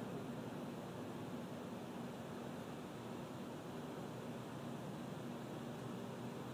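Faint steady hiss with a low hum underneath and no distinct event: the background noise of a live broadcast audio feed between commentary.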